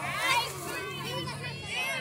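Children's voices, several talking and calling out at once, over a steady low hum.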